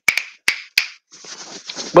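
Hands making four sharp snapping clicks within about a second, the first two close together, followed by a soft, faint noise.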